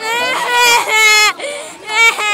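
A girl's loud, high-pitched voice in drawn-out, wailing tones, one long run of sound lasting over a second and then a shorter one.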